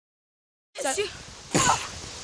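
Dead silence at first, then a child's brief wordless vocal sounds, with a short, louder vocal burst about a second and a half in.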